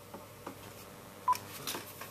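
A mobile phone's key beep: a sharp click with a short electronic beep about a second in, with a few faint clicks before and after it.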